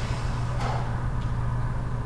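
Steady low hum of room background noise.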